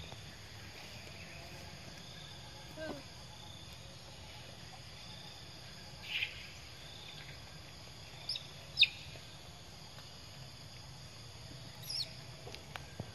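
Steady outdoor insect chorus, broken by a few short, high chirps that fall in pitch. The loudest and sharpest comes about three-quarters of the way through, and a lower falling squeak comes about a quarter of the way in.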